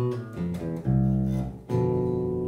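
Electric bass (a D'Mattos) played unaccompanied: a short phrase of about five plucked single notes, the last two held longer and louder. The phrase comes to rest on the fourth over G, the avoid note that sounds wrong over a G7.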